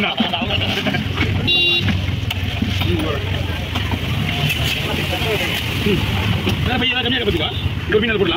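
Busy market ambience: several people talking over a steady low engine hum, with a short, high horn toot about a second and a half in.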